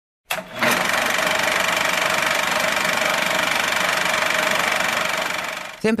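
Radio static as a show-intro sound effect: a couple of clicks, then a loud, steady hiss with a rapid flutter and faint steady whistles, fading out near the end just as a woman starts speaking.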